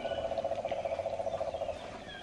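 A steady, rapidly pulsing animal-like trill, faint and fading out near the end.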